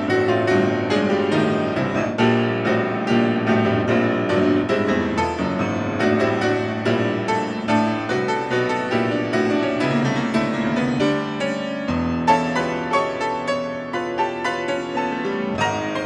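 Kawai grand piano played in a busy, fast-moving passage, with rapid runs of notes over sustained chords and a deep bass chord about twelve seconds in.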